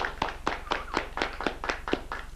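Applause: hand claps coming quickly and unevenly, each clap distinct.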